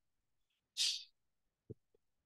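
A single quick, sharp breath about a second in, followed by a faint tap near the end.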